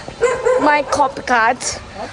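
A girl's voice speaking in drawn-out, sing-song syllables, with a short pause in the middle.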